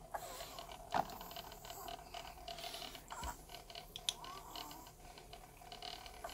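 Faint, irregular clicks and taps of a plastic action figure being handled and stood on a display base, with one sharper knock about a second in.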